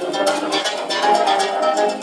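Live acoustic ensemble music with plucked guitar strings to the fore, a quick run of sharp plucked notes over held tones.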